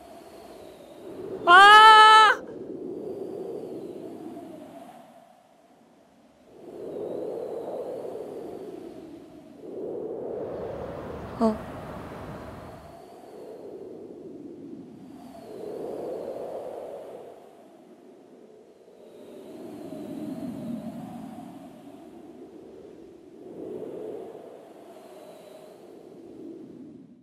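A short, loud cry that rises in pitch, about a second and a half in, followed by a series of slow swells of breathy sound, each a couple of seconds long, with a sharp click near the middle.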